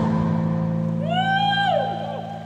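A live pop-rock band holding a low sustained closing chord at the end of a song. About a second in, a high voice sings out one long note that rises, holds and falls away.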